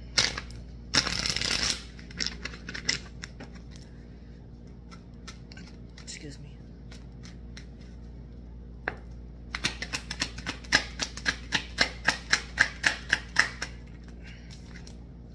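Tarot cards being shuffled by hand: a brief riffle flutter about a second in, scattered card taps, then a quick run of card snaps, about three or four a second, in the last few seconds.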